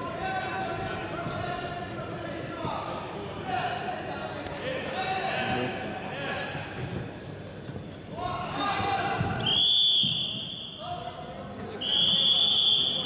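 Referee's whistle blown in two long, steady blasts, one about nine and a half seconds in and another just before the end, signalling the wrestling bout. Before the whistles there are shouting voices in the hall and dull thuds.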